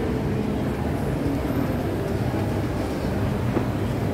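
Indoor shopping mall ambience: a steady low rumble with indistinct murmur echoing through a large multi-storey atrium, and a single faint click near the end.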